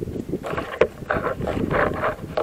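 Footsteps on the gravel ballast and sleepers of a railway track, a quick irregular run of scuffs, with wind buffeting the microphone.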